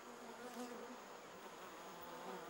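Faint buzzing of flying bees, a low wavering hum.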